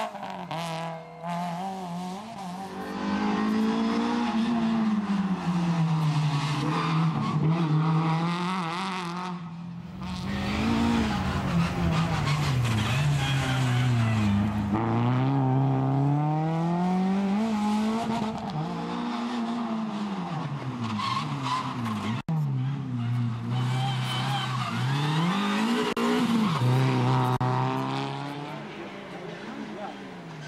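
Renault Clio rally car's engine revving hard and dropping back again and again as it is driven flat out through tight turns and gear changes, with tyre noise on the loose gravel surface.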